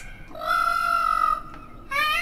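Indian peafowl (peacock) call: one steady, high-pitched note held for about a second.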